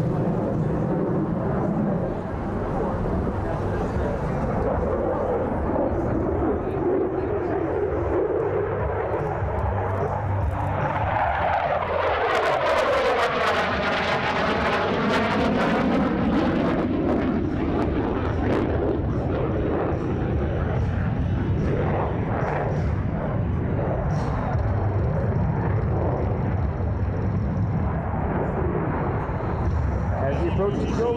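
F-16 fighter jet running at high power in a demonstration pass, its engine noise building to a peak about halfway through with a swooshing, phasing sweep as the jet passes overhead, then carrying on as it pulls away.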